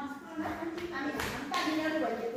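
Faint, indistinct voices of several people talking in a room, with a patch of hiss-like noise in the second half.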